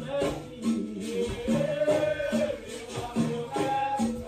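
Capoeira music with a repeating rhythm of rattling percussion and pitched notes, and a singing voice over it.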